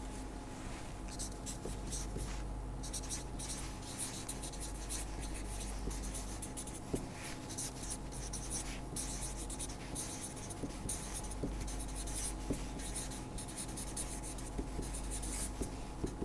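Marker pen writing on paper: irregular scratchy strokes, letter by letter, over a steady low hum.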